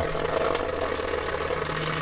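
Rainwater dripping onto plastic sheeting, a steady patter, over a low steady hum.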